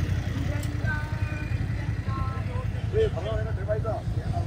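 Low, steady rumble of motorcycle engines idling and passing traffic, with voices chattering in the background about a second in and again near the end.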